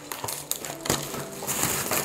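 Plastic bubble wrap crinkling and rustling as it is handled and unwrapped by hand, with a few sharp crackles.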